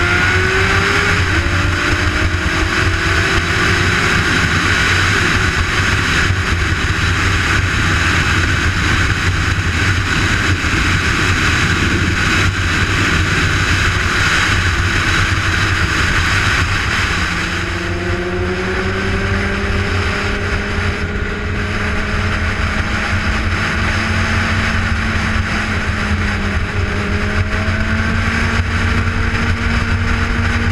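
Honda CBR600RR inline-four engine running at highway speed under loud, steady wind rush on the microphone. The engine note drops about a second in, then slowly rises. Just past halfway it eases off briefly before climbing slowly again.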